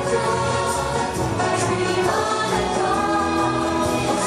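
Parade soundtrack music with a choir singing, playing continuously at a steady level.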